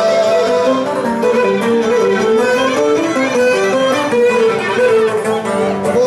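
Live Cretan dance music: a bowed lyra playing a running, stepwise melody over plucked laouto accompaniment, loud and unbroken.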